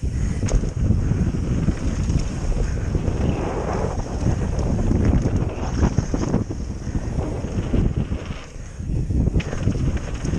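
Wind rushing over a helmet-mounted camera's microphone as a mountain bike descends a dirt trail at speed, with rumble and scattered knocks from the ride. It eases briefly near the end.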